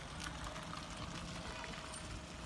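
A 1968 Saab station wagon converted to electric drive rolls slowly past. The electric drive is almost silent, so all that is heard is a faint, even hiss of tyres on damp paving.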